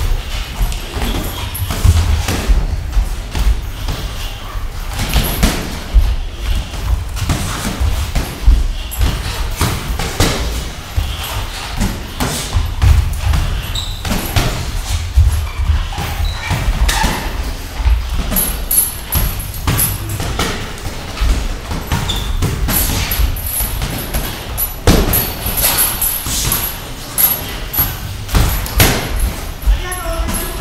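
Mass boxing (light-contact sparring) in a ring: boxers' feet thudding and shuffling on the ring canvas, with soft glove impacts. Irregular thumps come every second or so throughout.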